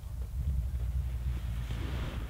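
Wind buffeting the camera microphone: a steady low rumble, with a faint rustle creeping in near the end.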